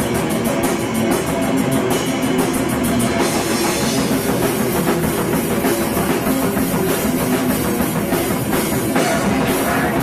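Live rock band playing loud in a small club, with drum kit and electric guitar; fast, even cymbal strikes drive the first few seconds.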